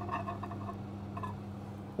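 Faint light clinks and knocks of small ceramic cups being lifted out of a microwave oven, over a steady low hum.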